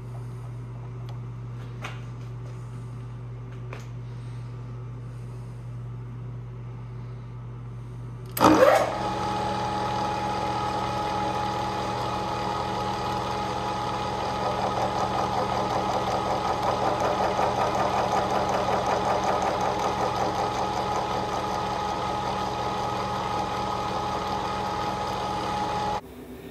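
Low steady hum with a couple of light clicks, then about eight seconds in the vertical mill's spindle starts and the two meshed spur gears run with a steady many-toned gear whine. In the middle stretch the whine grows louder and rougher, with a rapid pulsing, as the right-hand gear is fed tighter into mesh, then settles steadier. The gear noise is the gauge of mesh tightness: the point of least noise marks the best running center distance.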